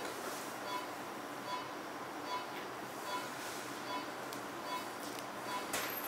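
A short, mid-pitched electronic beep from operating-room equipment, repeating evenly about every 0.8 seconds over a steady hiss.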